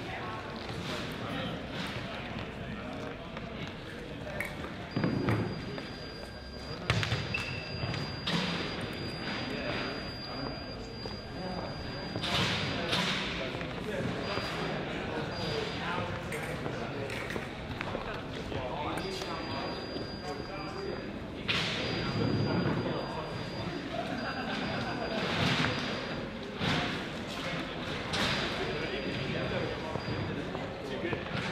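Large echoing sports-hall ambience with indistinct voices in the background and several loud thuds on and off, with a faint high steady tone coming and going.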